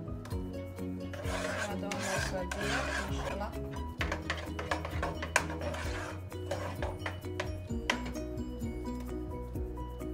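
A spoon stirring and scraping thick custard in a saucepan, in patches of scraping in the first few seconds and again around six to seven seconds, with a few clicks of the spoon on the pot between. Background music plays throughout.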